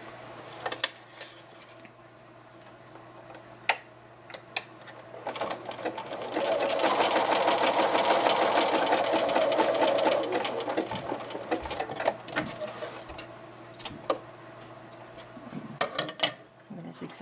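Electric sewing machine running a zigzag stitch along the fabric's raw seam edge to keep it from fraying. A few light clicks come first, then the machine starts about six seconds in, runs fast and loud for about four seconds, and carries on more quietly for a few seconds more.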